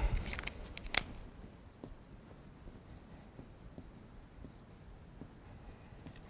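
A single sharp click about a second in, like a marker cap being pulled off, then faint dry-erase marker strokes on a whiteboard near the end.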